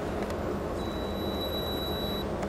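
Steady outdoor background noise with a low hum and a faint, thin high-pitched whine that comes in a little under halfway through; no distinct event.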